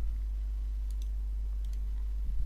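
A few faint computer mouse clicks, two quick pairs, over a steady low electrical hum.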